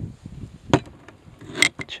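A few short knocks and clicks: a sharp one under a second in, then a small cluster near the end, as a glass hot-sauce bottle is handled and set down on a plastic cooler lid.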